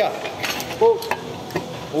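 A gym exercise machine giving a few light metallic clinks and knocks as its bar is let down and released at the end of a set, with a short voiced sound between them.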